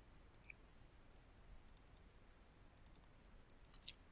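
Computer mouse clicking in four short, quick clusters, faint and sharp.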